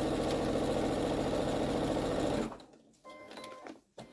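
Brother electric sewing machine stitching a seam through patchwork fabric at a steady, fast speed, then stopping about two and a half seconds in.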